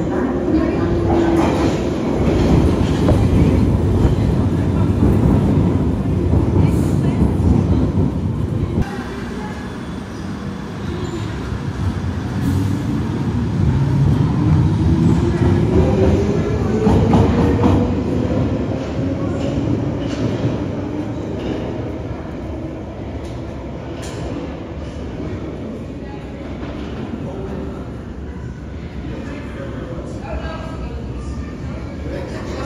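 London Underground Piccadilly line tube train (1973 Stock) rumbling loudly into a deep-level station platform. About nine seconds in the level drops, and then a rising whine from the traction motors climbs in pitch over several seconds as a train pulls out and accelerates away into the tunnel, fading to a lower rumble.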